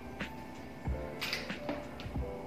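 Soft background music with a few light clicks and knocks from handling equipment, and a brief rustle a little past the middle.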